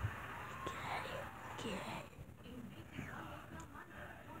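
Faint whispering and quiet, low voices.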